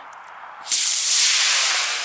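A 24 mm Aerotech F-32 composite rocket motor ignites under a second in, with a sudden loud, steady hiss as the rocket glider lifts off the pad and climbs under full thrust.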